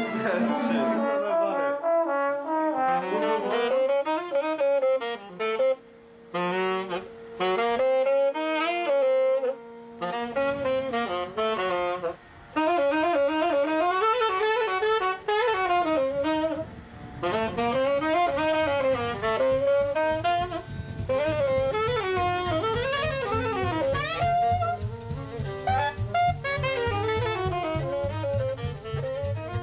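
Gypsy orchestra music: a fast, winding, ornamented melody with a second line moving alongside it over held notes, joined about ten seconds in by a low pulsing accompaniment.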